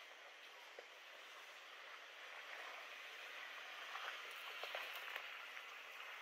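Faint crackly crunching of a Lexus GX470's tyres rolling slowly over a dirt-and-rock trail, a little louder from about two seconds in, with a few light ticks.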